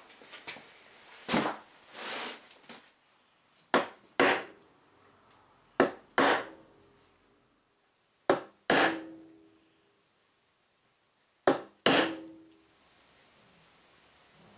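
A hammer tapping a wooden dowel held in a hole as a punch, knocking out the dowels that join a mahogany mirror stand. There are four pairs of sharp wooden knocks, each pair two quick blows a few seconds after the last, and each blow rings briefly. Some handling noise comes first.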